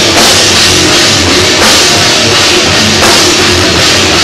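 Live rock band playing loud and dense: electric guitars over a drum kit with cymbals.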